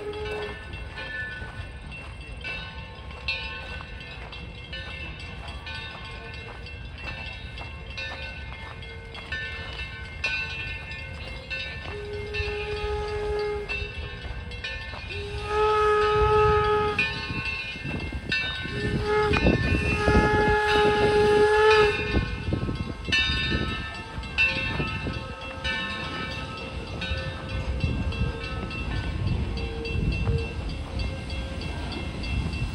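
The chime steam whistle of the 1873 Mason Bogie steam locomotive Torch Lake, a chord of several tones. One blast ends just at the start, then come three long blasts a few seconds apart in the middle. Under it runs a steady low rumble and hiss from the working locomotive and train, loudest while the whistle blows.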